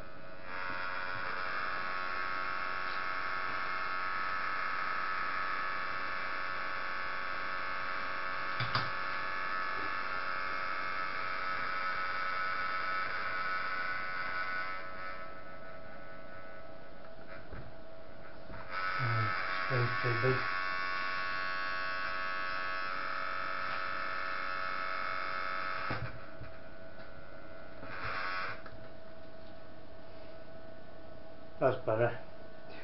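Anet ET4+ 3D printer's stepper motors whining as the axes move: a long run for the first 15 seconds, another from about 19 to 26 seconds, and a short burst near 28 seconds, over a steady hum.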